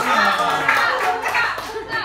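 A small group clapping, with people talking over it.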